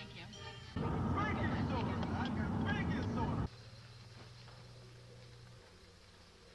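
Glitching analogue videotape audio: a loud burst of garbled, noisy sound with warbling voice-like glides starts abruptly about a second in and cuts off sharply after about two and a half seconds, leaving a low steady hum.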